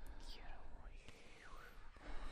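A faint, breathy whisper whose hissing pitch sweeps down and then back up.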